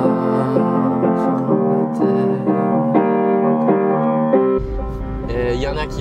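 Piano chords played slowly, a new chord struck about twice a second. About four and a half seconds in they cut off suddenly, replaced by the low rumble of a car interior on the move.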